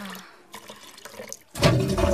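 A drawn-out cry of 'ah!' falling in pitch trails off, then after a quieter second a loud rush of water starts suddenly about one and a half seconds in.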